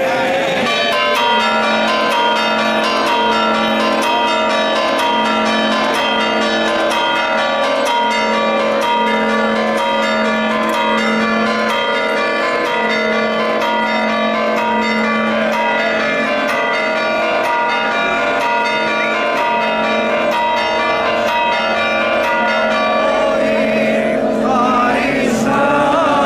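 Church bells ringing in a continuous, rapid peal, several bells of different pitches struck over and over: the festive bell-ringing for the Orthodox Easter Resurrection.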